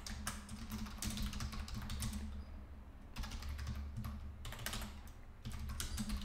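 Typing on a computer keyboard: runs of quick keystrokes with a couple of short pauses, as a line of code is typed.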